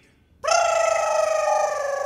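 Background music: after a brief hush, a single held note comes in about half a second in and sustains with a slight waver.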